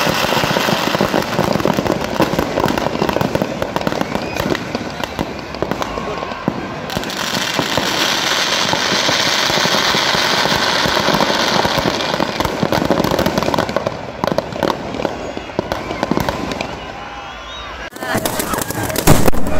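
Firecrackers packed into burning Dasara effigies, popping rapidly and without a break over the voices of a large crowd. A loud hissing rush swells up in the middle.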